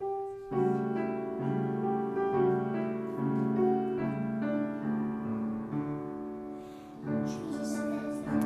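Piano introduction to a children's song, starting suddenly with a single held note and moving into chords about half a second in.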